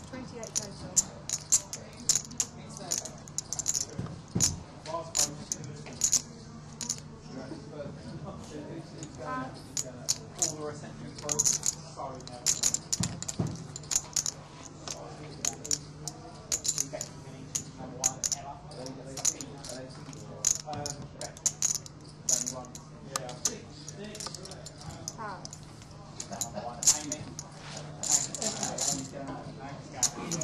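Poker chips clicking together in quick runs, the sound of players riffling and stacking their chips at the table, with a steady low hum underneath.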